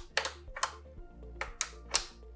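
Sharp mechanical clicks, about five in two seconds and irregularly spaced, from the manual turntable speed selector of a 1972 Sanyo portable stereo being turned through its detent notches.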